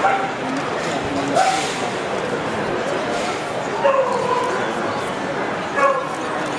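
A dog gives a few short barks and yelps, the first about a second in, another at about four seconds that falls in pitch, and one near the end, over the steady chatter of a crowded hall.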